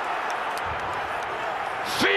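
Steady background hubbub of a rugby match's pitch-side sound just after a try is scored, with no commentary over it.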